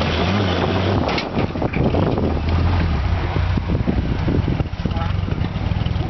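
Off-road buggy's engine running at low revs under load as it crawls over a dirt ledge, with scattered knocks and crunches from the tyres and chassis on dirt and rock.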